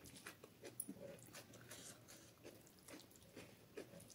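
Faint, close-up sounds of fingers squishing rice mixed with dal on a plate, with scattered small wet clicks and smacks, and possibly some chewing.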